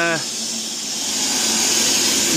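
Media blasting nozzle hissing steadily as it strips old stain and sun-darkened wood from a log handrail.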